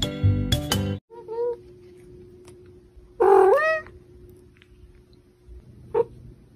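Music with struck, chime-like notes stops about a second in. Then a domestic cat gives a small chirp and, about three seconds in, one loud meow that rises and falls, over a faint steady hum.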